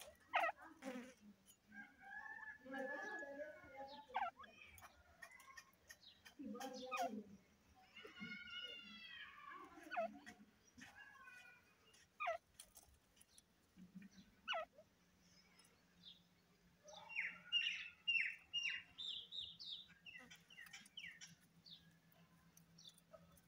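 Caged grey francolins (teetar) calling: scattered short, sharp, falling notes, a drawn-out whistled call about eight seconds in, and a quick run of short high notes near the end.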